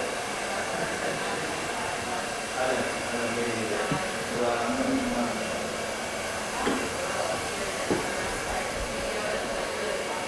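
Handheld hair dryer blowing steadily while a barber styles a customer's hair.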